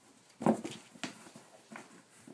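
Two Abyssinian kittens wrestling against a cube of foam puzzle floor mats: a loud thump about half a second in, then lighter knocks and scuffles near one second and again near the end.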